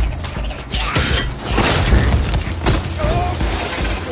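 Film sound effects of a robot fight: clanking and whirring mechanical robot parts with repeated impacts and a few short gliding squeals, over a music score.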